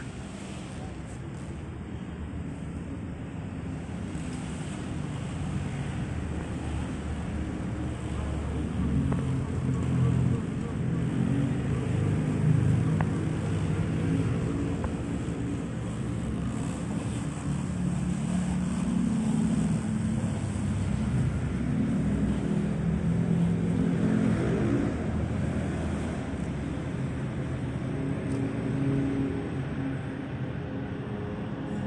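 Honda Brio's small petrol engine running as the car is driven slowly past, growing louder over the first ten seconds.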